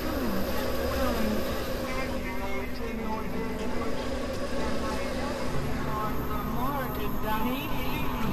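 Experimental electronic noise music from synthesizers: a steady low drone under a dense buzzing texture, with short gliding pitch sweeps that rise and fall throughout.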